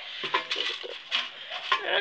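Light metallic clinks and rattles from a metal rabbit feeder holding feed pellets. A man starts talking near the end.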